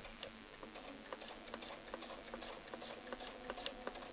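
Domestic sewing machine running, stitching through a quilt during ruler work: a faint steady motor hum with rapid light ticking from the needle mechanism.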